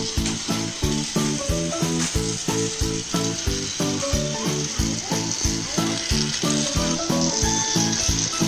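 Battery-powered toy trains running on plastic track, a steady rattling whir of their motors and wheels. A simple electronic tune with a steady beat of about four a second plays over it.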